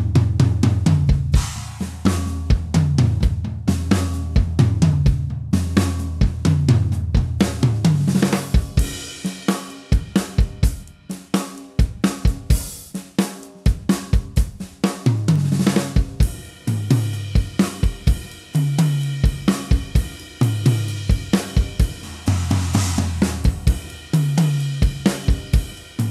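A drum kit played in a steady groove: bass drum, hi-hat and cymbals, with a 14x6 DS Drum seamless copper snare on the backbeat. There is a short break in the beat about ten seconds in.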